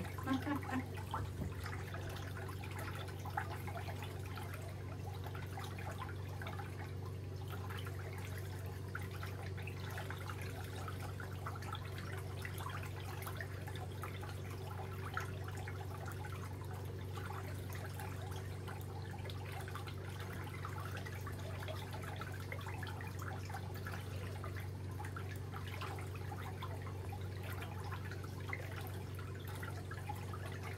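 Pedicure foot bath running: a steady low hum with faint water sounds that holds evenly throughout.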